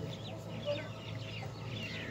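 Faint bird calls: scattered short chirps over a low steady hum.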